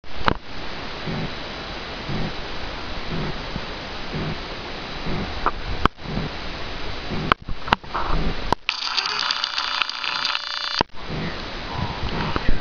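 Steady noise on a handheld camera's microphone, with soft low puffs about once a second. Near the middle come several sharp clicks, then about two seconds of a thin whirring whine, plausibly the camera's zoom motor as the view widens, which stops suddenly.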